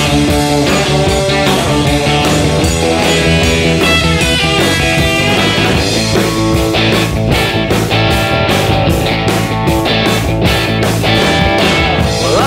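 Instrumental break of a rock-and-roll band song, led by electric guitar, with the drums hitting a steady, sharper beat from about halfway through.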